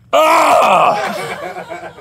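A man's loud, drawn-out vocal cry without words, starting suddenly and wavering in pitch before trailing off near the end.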